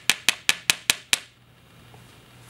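A rigid glass phone screen protector tapped repeatedly against a hard surface: seven sharp, hard clicks at an even pace of about five a second, stopping a little over a second in.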